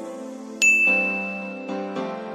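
A single bright electronic ding sound effect, the notification-bell chime of a subscribe animation, struck about half a second in and ringing steadily for about a second, over background music.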